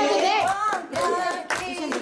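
Women singing a Haryanvi folk song, with hand clapping; the singing dips twice.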